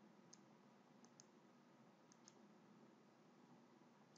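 Near silence with about five faint computer mouse clicks, two of them in quick pairs.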